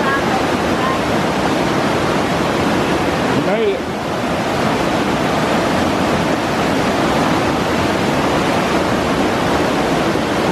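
Whitewater rapids of a rocky mountain river rushing loudly and steadily, dipping briefly about four seconds in.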